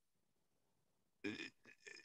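Near silence in a pause between a man's words, broken a little over a second in by a short, throaty sound from his voice, then a couple of faint mouth clicks.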